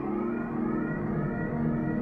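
Quiet ambient synthesizer intro: sustained low chords with faint, slowly rising sweeps above them.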